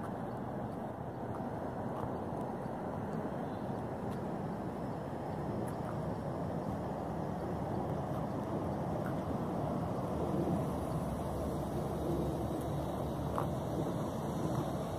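Steady low rumble of highway traffic, with no distinct events standing out.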